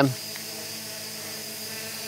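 Holybro X500 quadcopter's four motors and propellers humming steadily while it hovers low, several steady tones over a light hiss.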